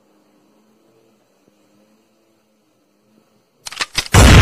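A very faint low hum, then near the end a sudden run of loud, sharp crackling clicks: the start of a glitch-style static sound effect.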